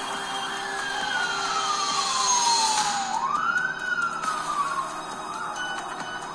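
Ambulance siren wailing: one long, slow fall in pitch, then a quick rise about three seconds in and a second fall that fades out, over the noise of a crowd.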